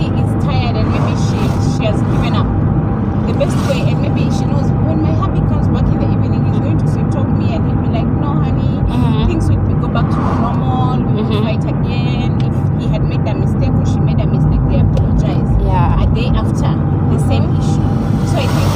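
Steady low rumble of engine and road noise inside a moving car's cabin, with faint, indistinct talk over it.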